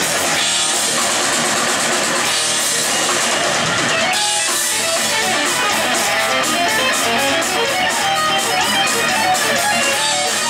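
Live rock band playing loudly: two electric guitars, bass guitar and a drum kit, with a fast, regular cymbal pattern joining in the second half.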